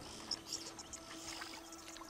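Faint water sloshing and splashing from an African buffalo calf's hooves in shallow water, under a single held low note of background music.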